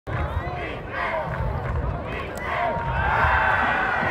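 Crowd in the stands at a high school football game, many voices shouting at once, growing louder over the last second and a half as the play develops.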